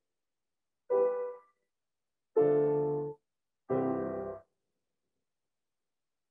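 Three full chords played on a grand piano, one after another, each cut off abruptly. They are played with the weight of the torso and arms carried through a relaxed wrist, for a rich, full tone.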